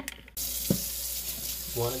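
Kitchen faucet running into a sink, a steady hiss of water that starts abruptly about a third of a second in, with shoelaces held and rinsed under the stream.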